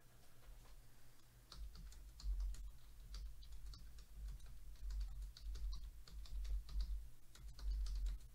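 Typing on a computer keyboard: quick, irregular key clicks starting about a second and a half in, with low thuds from the desk under them.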